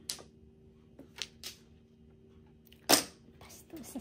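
Mahjong tiles clacking on the table as players discard and handle them. There are a few light clicks in the first second and a half, then one sharp, loud clack just before three seconds in.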